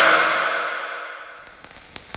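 A ringing, gong-like hit dies away in a long echoing tail over about a second and a half, leaving faint scattered crackling clicks with one sharp click near the end.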